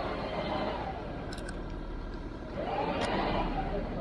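A recovery vehicle's winch hauls a car in on its cable, running steadily with a faint whine that rises and falls twice.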